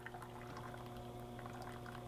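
Newco CX Touch brewer on its rinse cycle: water running from the mixing-bowl spout into a paper cup, under a faint, steady hum from the machine.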